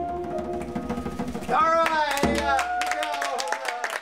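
A band's closing chord on piano and saxophone dies away. A voice calls out with a gliding whoop over hand claps that grow denser toward the end.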